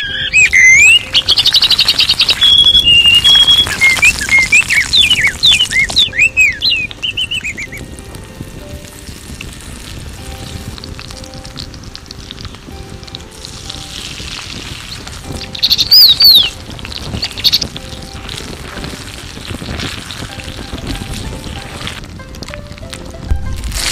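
Birds singing loudly with quick chirps, trills and sliding whistles for the first seven seconds or so, then again briefly about sixteen seconds in, over quiet background music.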